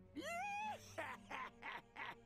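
An animated character's voice on the anime soundtrack, heard quietly: a rising, held cry, then a staccato laugh at about three beats a second.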